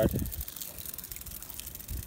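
Aerosol can of foaming engine degreaser spraying: a steady, fairly faint hiss.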